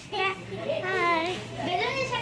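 Children's voices, a few short stretches of talk and play.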